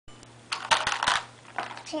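Small plastic toy pieces clicking and clattering in a quick flurry for about half a second, as toddlers handle a plastic toy farm set; a voice says "two" near the end.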